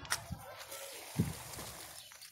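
Crinkly rustling of a woven plastic sheet being pulled aside, with a soft thump a little past a second in.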